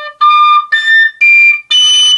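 Generation tabor pipe, a three-hole overtone flute, played with all finger holes closed: a quiet low root note, then four louder notes stepping up the overtone series, each higher note drawn out by blowing harder. Each note is a clear, pure whistle lasting about half a second.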